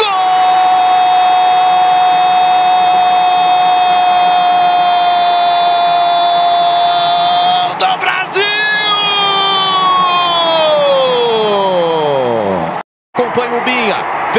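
A sports commentator's drawn-out goal cry: one long held "gooool" for about eight seconds, then a second held call that slides steadily down in pitch until it breaks off about thirteen seconds in, over crowd noise.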